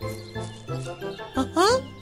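Light, tinkling children's background music with a repeating melody over a bass line. Near the end, a short rising cartoon voice sound cuts in over it.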